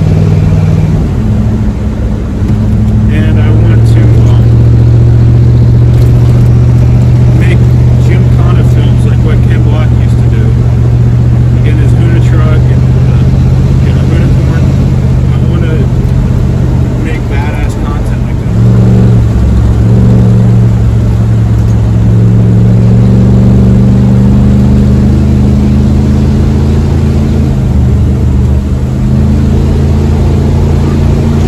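Ford 302 V8 engine of a 1982 F-150 pulling the truck along, heard from inside the cab as a steady low drone. Its pitch shifts about a second in and again around two-thirds of the way through as engine speed changes.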